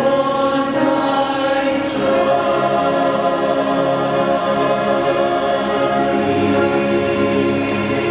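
Mixed church choir singing a hymn in long held chords, with violins accompanying. The chord changes about two seconds in.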